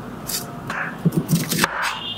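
A kitchen knife peeling and cutting a small onion: a few short, crisp scrapes and cuts, most of them bunched together in the second half.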